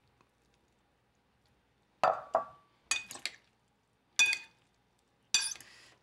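A metal fork and spoon clink against a clear glass salad bowl as the salad is tossed. After a near-silent start, there are several separate clinks with a short ring, beginning about two seconds in.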